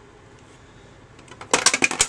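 Small hard plastic pieces clattering and rattling onto a tabletop, starting suddenly about a second and a half in after a quiet stretch.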